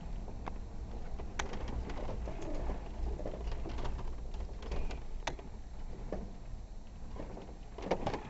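Off-road vehicle working slowly over a rough trail: a steady low engine and drivetrain rumble with rattles, and two sharp knocks, about a second and a half in and about five seconds in.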